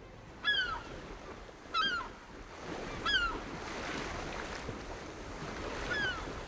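Seagull cries over the wash of sea surf: three short, bending calls about a second and a half apart, then another near the end, over a steady sound of waves that swells a little after the first couple of seconds.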